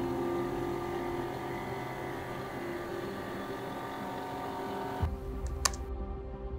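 Flatbed scanner scanning: the scan head's steady mechanical running noise cuts off abruptly about five seconds in. A couple of sharp clicks follow near the end.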